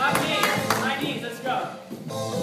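A voice over aerobics-class music, with a few sharp claps in the first second.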